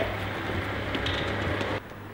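Outdoor background noise with a steady low hum and a few faint ticks, dropping away near the end.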